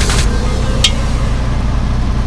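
Steady low rumble with a single sharp clink a little under a second in, as a glass lid is lifted off a pot of boiling chicken.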